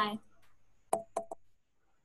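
Three quick, sharp clicks about a second in, close together.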